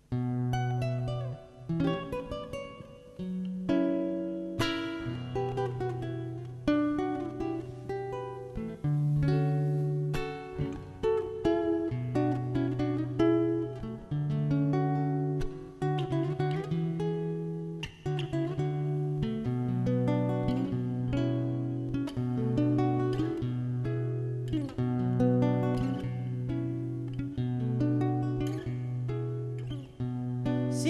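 Acoustic guitar playing the instrumental introduction to a zamba: a plucked melody over held low bass notes.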